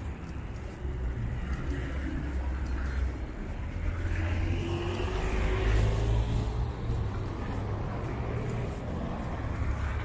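Steady road traffic on a wide multi-lane avenue: car and truck engines running low, with tyre noise on a slushy road. Around the middle one vehicle passes closer and louder, its engine note rising slowly.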